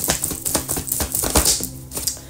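A deck of tarot cards shuffled by hand: a quick, irregular run of light clicks and flicks, with soft background music underneath.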